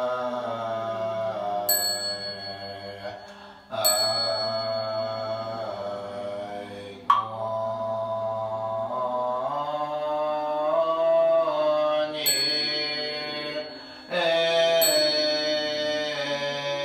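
A group chanting a Buddhist liturgy in unison, slow drawn-out notes that glide between pitches, led by a monk. A small ritual bell is struck several times, each strike ringing on.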